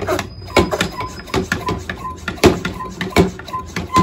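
One-gallon hand-pump pressure sprayer being pumped up to build pressure: a run of plunger-stroke knocks with a short squeak repeating about twice a second.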